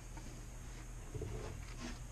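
Faint steady hum of a Rikon mini lathe running between cuts, with a few soft knocks of turning tools being handled a little past halfway.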